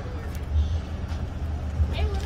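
Steady low rumble of street background noise, with faint voices.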